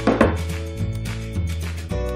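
Background music playing, with a single sharp knock about a fifth of a second in as a ceramic mug is set down on the table.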